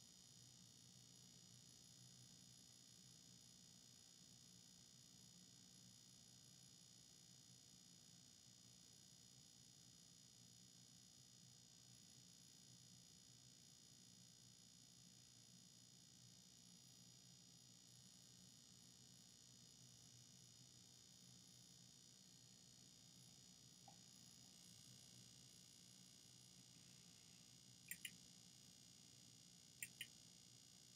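Near silence with a faint steady hiss and low hum. A computer mouse clicks twice in quick succession near the end, then once more at the very end.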